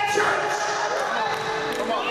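A man's voice, amplified through a microphone, preaching in loud, drawn-out cries over a church band's quiet backing, with a few sharp knocks.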